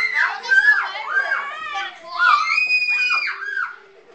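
Young children shrieking and yelling excitedly over one another, with one long high-pitched scream about halfway through.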